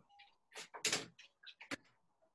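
A quick run of knocks and clicks, the loudest about a second in, with a sharp click near the end.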